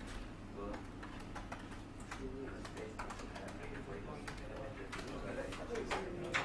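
Low murmur of people talking quietly in a small room, with scattered light clicks and taps throughout.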